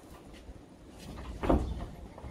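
A loud hollow thump from inside a horse trailer holding a cow, about one and a half seconds in, over low rumbling and shuffling.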